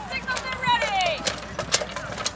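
A horse galloping past at a joust, its hoofbeats coming as quick sharp strikes in the second half, with a person's voice calling out in the first second.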